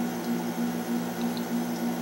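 A steady low hum that pulses about three times a second, over faint room noise.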